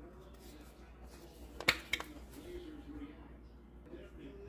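A sharp plastic click about two seconds in, followed by a softer one, from handling a plastic sour cream squeeze pouch.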